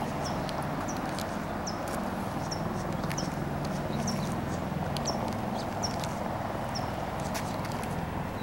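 Footsteps on asphalt at a walking pace, a light tick about every half second over a steady low hum of background noise.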